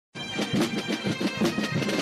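Asturian pipe band: gaitas (Asturian bagpipes) playing over their steady drone, with snare and bass drums beating along.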